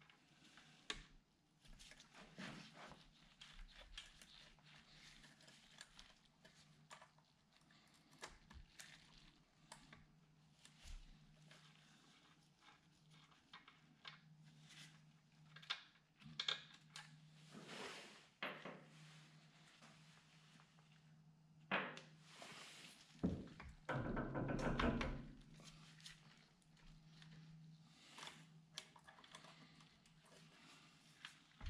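Faint scattered clinks and knocks of a paramotor exhaust silencer being handled and worked onto its mount by hand, with a louder cluster of knocks a little over twenty seconds in. A faint steady hum runs underneath.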